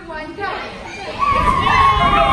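Children's voices shouting and calling out together, getting much louder and higher about a second in.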